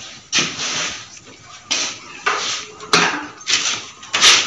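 A heavy bag and its cloth contents being handled: a series of sharp rustles and knocks, about five over four seconds.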